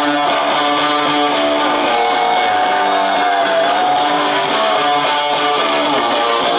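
Live indie rock band playing an instrumental passage, led by strummed electric guitars over bass guitar. A held guitar note slides in pitch about halfway through.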